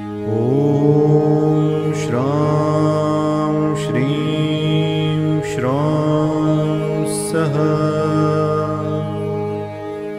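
Intro music: a chanted mantra sung over a steady drone, each sung phrase sliding up in pitch as it begins.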